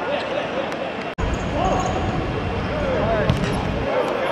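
Outdoor football play: players' and onlookers' shouts over the thuds of the ball being kicked on the artificial pitch. The sound drops out for an instant about a second in, then comes back with a low rumble underneath.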